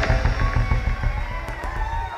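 Live reggae band playing, heavy bass and drums with guitar and keyboard, between vocal lines.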